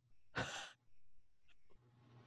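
A woman's breathy sigh, one exhale about half a second in, let out through the strain of a deep, painful stretch.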